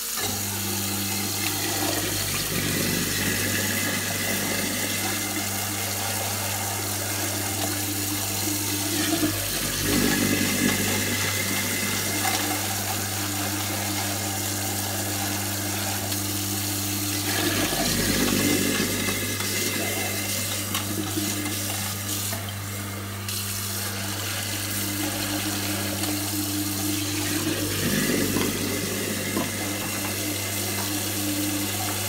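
Kitchen mixer tap running at full flow into a ceramic sink, splashing into and filling the dirty-water tank of a Bissell CrossWave as it is rinsed out. The water sound swells now and then as the tank fills and is swirled, over a steady low hum.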